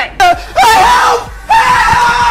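A man screaming: two long, high yells, the second held at one pitch before it stops.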